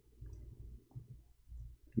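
Faint low hum of room tone with a few soft clicks.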